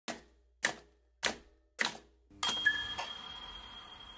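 Four evenly spaced typewriter keystrokes, about one every half second, then a sudden ringing sound a little past the halfway point that slowly fades out.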